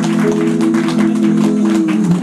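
Small live band playing an instrumental passage of a western song: long held notes over strummed chords and drum strokes.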